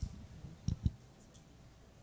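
Two short, low thumps less than a second in, after a click at the start: handling noise on a handheld microphone in a quiet room.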